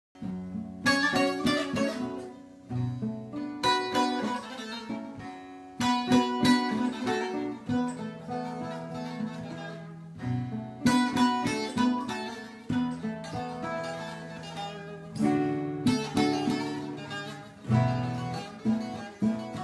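Acoustic guitar played solo, an instrumental introduction before the singing: phrases of strummed chords, each opening with a loud strum and ringing on into picked notes.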